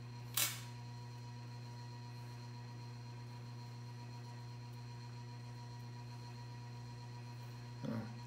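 Steady low electrical hum, a mains-type buzz with a few faint higher tones above it, and one short rustle about half a second in.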